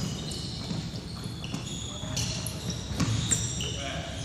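Basketballs bouncing on a hardwood gym floor during dribbling, with short high sneaker squeaks and children's voices in the background.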